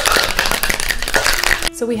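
Ice rattling inside a metal cocktail shaker in a quick, hard shake: a dense run of rapid rattling that stops near the end.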